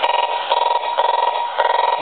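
AM radio tuned to static picking up electromagnetic interference from a handheld infrared remote control while its button is held down: a buzzing tone that comes in bursts about twice a second, following the remote's repeated signal.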